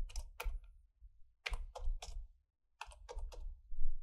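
Computer keyboard being typed on in three short bursts of a few keystrokes each, with brief pauses between. Each keystroke is a sharp click with a dull thud beneath it.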